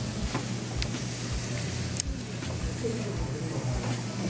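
Restaurant dining-room background: a steady low hum under faint, indistinct voices of other diners, with a single sharp click about halfway through.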